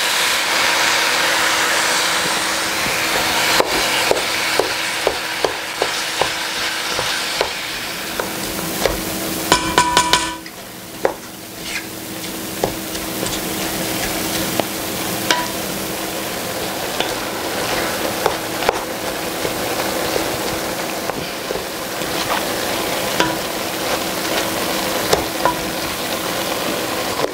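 Ground Italian sausage with onions and red peppers sizzling as it browns in a Dutch oven, a wooden spoon scraping and knocking against the pot as the meat is broken up and stirred. About ten seconds in comes a quick run of sharper knocks against the pot.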